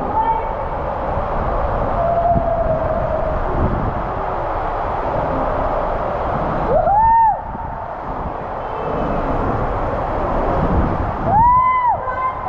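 Water rushing and a raft rumbling down an enclosed tube waterslide, with a rider whooping twice, once about seven seconds in and again near the end, each call rising and then falling in pitch.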